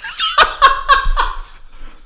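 A man laughing hard: a quick run of loud laughs starting about half a second in, then trailing off.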